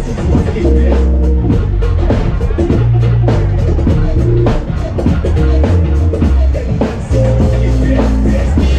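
Live band playing instrumental hip-hop and jazz: drum kit keeping a steady beat under a deep bass line, with keyboards and electric guitar on top, loud and continuous.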